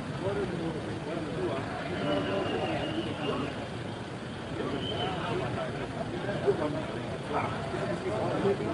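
Indistinct voices of people talking over steady city street traffic noise, with one brief sharp sound about six and a half seconds in.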